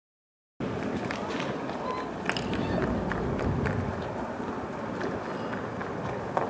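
The sound cuts out entirely for about the first half second, then outdoor street-clash noise returns: a steady rush with several sharp cracks and snaps scattered through it, and voices in the mix.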